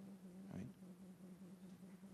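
Near silence: room tone with a steady low electrical hum, and a faint short sound about half a second in.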